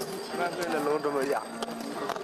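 Several voices of a street crowd overlapping, with wavering pitch, followed by a couple of sharp knocks near the end.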